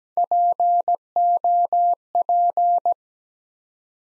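Morse code sidetone, a single pitch near 700 Hz, keying the word POP (dit-dah-dah-dit, dah-dah-dah, dit-dah-dah-dit) at 17 words per minute. It stops about a second before the end.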